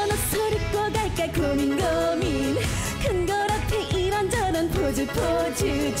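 A woman singing an upbeat Korean trot song live into a handheld microphone, over backing music with a steady dance beat.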